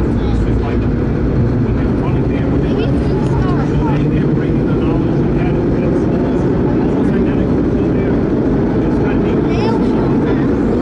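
Vintage R1-9 subway car (1930s-built) running at speed through a tunnel, heard from inside the car: a loud, steady rumble of wheels on rail and running gear, with short faint higher squeaks scattered over it.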